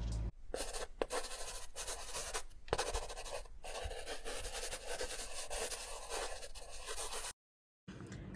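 Pen scratching across paper in quick, irregular strokes, a handwriting sound effect. It cuts off abruptly about seven seconds in.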